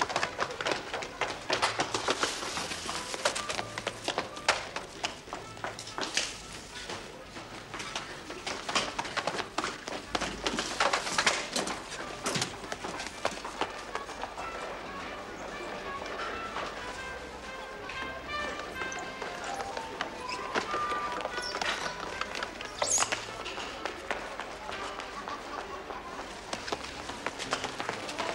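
Footsteps of people running on a hard floor, many quick steps, under incidental music. The steps thin out about halfway, and the music's melody notes come forward.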